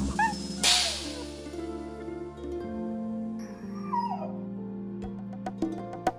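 Background music with steady held tones, over which a short dog whine sound effect falls in pitch about four seconds in; a brief hiss comes about a second in.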